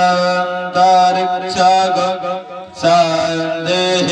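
A man chanting Sanskrit mantras in a drawn-out, sung recitation, amplified through a handheld microphone, with a short break for breath about two and a half seconds in.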